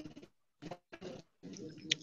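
A few faint, short voice sounds with quiet gaps between them, heard over a video call.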